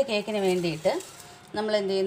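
A woman's voice speaking, with a short pause about a second in.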